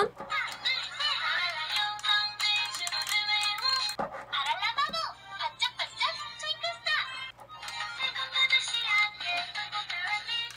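A Barala Fairies toy magic wand playing its built-in electronic song with synthesized singing, set off by pressing its button.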